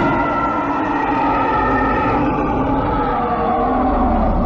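A purported Sasquatch roar, whose true source cannot be confirmed. It is one long, loud howling call that slowly falls in pitch, with a rough low rumble beneath it.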